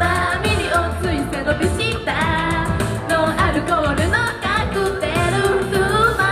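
Japanese idol pop song performed live: a female vocal group singing into handheld microphones over a pop backing track with a steady beat, played through the stage PA.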